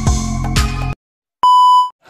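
Electronic intro music with a regular beat that cuts off about halfway, followed by a brief silence and a single loud, high beep tone lasting under half a second.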